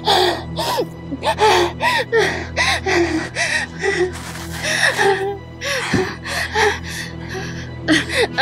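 A woman gasping for breath in quick, repeated pulls, mixed with short whimpering cries, in distress as she clutches her chest. Low sustained background music runs underneath.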